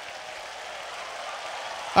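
Audience applause in a large hall, an even clatter of many hands that slowly swells.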